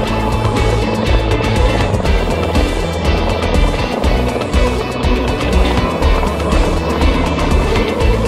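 Background music, with a small RC truck's brushed electric motor and gearbox running underneath as it drives over concrete and grass.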